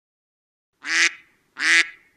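A duck quacking twice: two loud, short quacks about three-quarters of a second apart.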